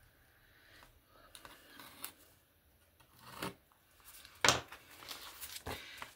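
Paper envelope being pulled from a journal and handled: faint, scattered paper rustles, with the sharpest and loudest rustle about four and a half seconds in and another just before the end.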